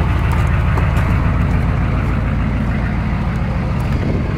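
A 1993 Chevy K2500's 6.5L turbo-diesel V8 idling steadily on waste vegetable oil, through a straight-pipe exhaust.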